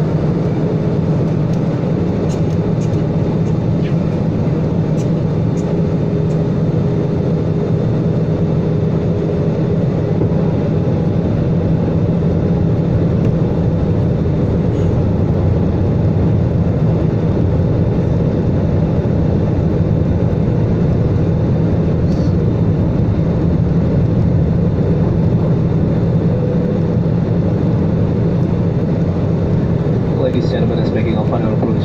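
Steady cabin noise inside an Airbus A320 airliner descending on approach: engine hum and airflow rushing past the fuselage, with a constant low drone.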